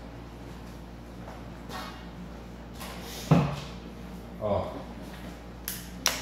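Plastic clipper guard being fitted onto a cordless hair clipper: one sharp click about three seconds in, then smaller knocks and a brief snap near the end, over a low steady hum.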